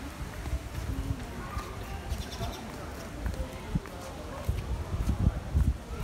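Indistinct voices of people walking nearby over a steady low rumble of wind on the microphone, with scattered light footsteps on brick paving.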